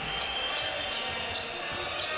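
A basketball being dribbled on a hardwood court, low thumps under a steady wash of arena crowd noise.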